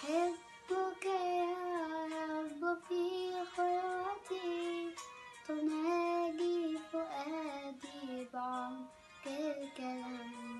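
A young girl singing an Arabic Christian hymn (tarnima) solo, in long held phrases with short breaths between lines.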